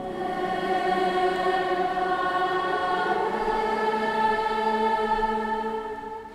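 Children's choir singing one long held chord that starts as the piano passage ends and fades away at the very end.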